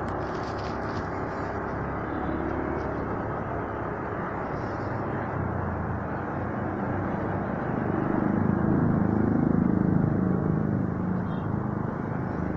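Motorcycle engine running while riding through city traffic, under a steady rush of wind and road noise. From about eight seconds in the engine gets louder and its pitch rises and falls for a few seconds, then it settles back.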